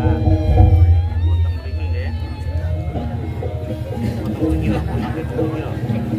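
Loud Javanese jaranan gamelan music with sustained notes over a low drum rhythm, with people's voices over it, a little louder in the first second and a half.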